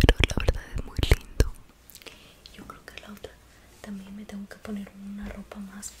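Dress fabric handled and rubbing against a close microphone: loud crackling and knocks for about the first second and a half, then softer rustling with low whispering.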